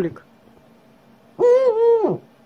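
Eurasian eagle-owl calling. The falling tail of one call comes right at the start, then about a second and a half in a higher call sets in, wavers and slides down in pitch as it ends.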